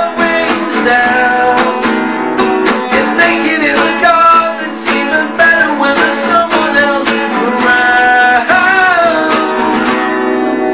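Strummed acoustic guitar playing a song's instrumental passage in a steady rhythm, with melodic notes held and bent above the chords.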